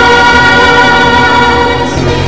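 A choir singing a Christmas song in long held notes, with musical accompaniment.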